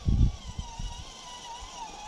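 Electric motor of a radio-controlled scale Ford rock crawler whining as it drives over dirt, the pitch wavering slightly with the throttle. There is a low thump right at the start.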